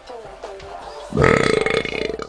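A long, loud, rough burp starting about a second in and lasting almost a second.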